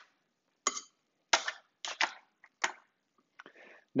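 A handful of short, sharp clicks and knocks from a metal utensil against an aluminium foil tray and a plate as potatoes and mushrooms are lifted out and set down.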